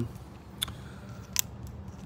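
Two small sharp clicks, about a second apart, as a stretchy Voile strap is worked around a bike handlebar and clamped flashlight.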